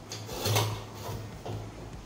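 Metal kitchen tongs gripping and scraping against an empty aluminium drink can as it is picked up: a rub about half a second in and a softer one near a second and a half, over a low steady hum.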